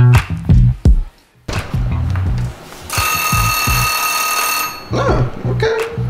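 A timer bell rings for about a second and a half in the middle, signalling that the baking time is up. It sounds over background music with a bass line.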